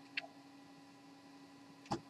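A man sipping from a pint glass of beer: two faint short clicks of the sip and swallow right at the start, then quiet room tone with a faint steady hum, and a short breath near the end.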